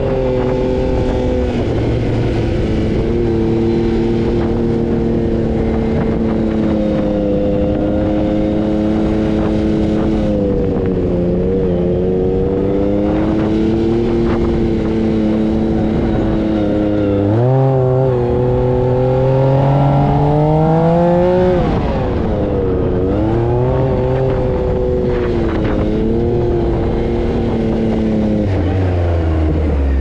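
A sand buggy's engine heard from the cockpit while driving over dunes, its note holding and wavering with the throttle. It climbs sharply a little past halfway and again about 20 seconds in, then drops away. A constant rushing noise runs under it.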